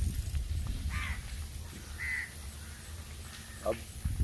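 A crow cawing twice, about a second apart, over a steady low rumble.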